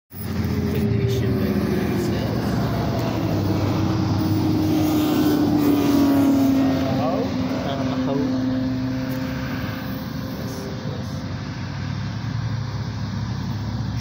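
Cars passing on a road, heard from inside a car's cabin through the windshield. A steady run of traffic is loudest about six seconds in, where a vehicle's engine note falls in pitch as it goes by.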